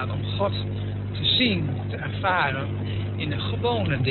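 Short stretches of a person's voice over a steady low hum.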